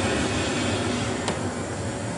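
MDG ICE Fog Q low-fog machine running, giving a steady rushing hiss as it releases liquid CO2 and fog. The hiss eases slightly about halfway through, with a single faint click.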